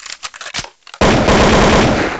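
An added sound effect: a run of sharp clicks, then about a second in a sudden, loud, rapid rattle of strokes that starts to fade near the end.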